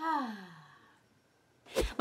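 A woman's drawn-out vocal sigh, falling steadily in pitch and fading over about a second. A brief sharp click comes just before the end.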